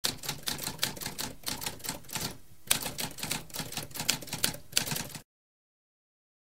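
Typewriter typing: a fast run of keystroke clacks with a brief pause partway through, stopping abruptly a little after five seconds in.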